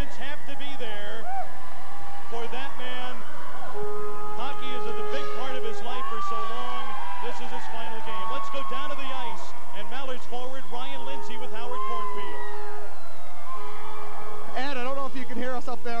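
Many overlapping voices of a celebrating crowd, with music playing underneath in long held notes; the whole mix stays steady and loud.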